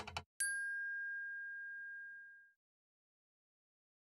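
Animated logo sound effect: a brief rattle, then a single bright bell-like ding about half a second in that rings and fades away over about two seconds.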